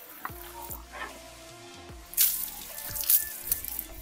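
Background music with a steady beat; from about two seconds in, short loud bursts of water spraying onto a car floor mat as it is washed.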